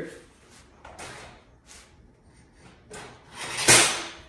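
Seat of a hunting tripod stand being fitted onto its post on the steel platform: a few faint knocks and rubs, then a louder sliding scrape about three and a half seconds in.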